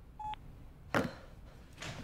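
A short single electronic beep from a mobile phone as a call is ended. About a second later comes a short, louder rush of noise, and a fainter one near the end.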